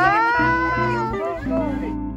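A woman's high-pitched excited squeal, rising and then falling over about a second, with soft background music underneath.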